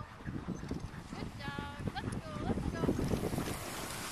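Wind rumbling over the microphone, with a short high call and a couple of brief rising yelps about halfway through.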